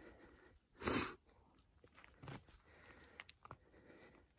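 A person's short, sharp breath or sniff close to the microphone about a second in, followed by a fainter breath and a few small clicks.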